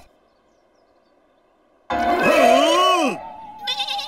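After near silence, a cartoon sheep bleats once, about two seconds in: one loud wavering call that rises and falls. It is followed by a steady held tone near the end.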